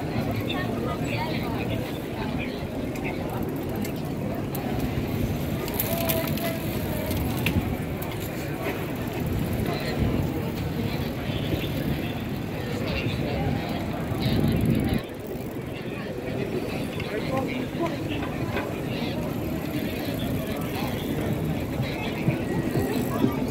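Street ambience of many people cycling past on a car-free road: indistinct voices and chatter over a steady low rumble, which drops suddenly about fifteen seconds in.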